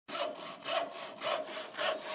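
Hand saw cutting through wood: four steady back-and-forth strokes, about two a second.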